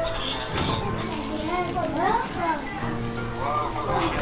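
Many young children talking and calling out at once, with music playing underneath.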